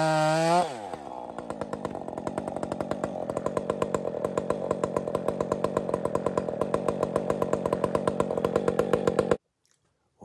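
Husqvarna 562 two-stroke chainsaw at full throttle in the cut; about half a second in the throttle is released and the revs fall away to a steady idle with an even pulsing beat. The sound cuts off abruptly near the end.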